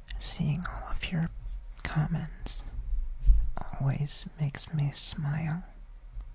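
Soft whispered talking close to the microphone, with a few sharp mouth clicks among the words.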